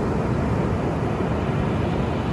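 Ocean surf breaking on the beach: a steady low rumble of high waves.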